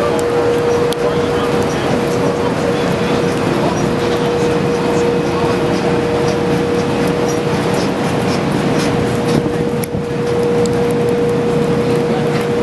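Loud, steady drilling-rig machinery noise with a constant mid-pitched whine running through it.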